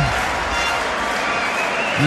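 Stadium crowd noise from football spectators, a steady wash of many voices and clapping with no single loud event.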